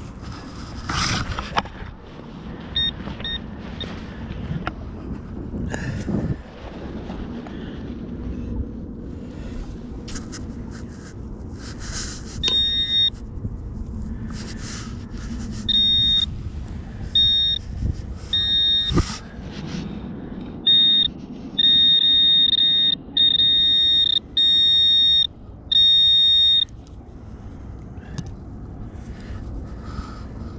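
A metal-detecting pinpointer beeping at one high pitch over a freshly dug hole: short beeps at first, then longer and louder tones, and in the second half a run of long, near-continuous tones as it closes in on a buried metal target. Scraping and a few thumps from soil being handled and dug come between.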